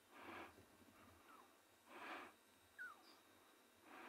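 Lion cub calling faintly in distress for its mother: three soft breathy calls, about one every two seconds, with two brief high falling mews between them.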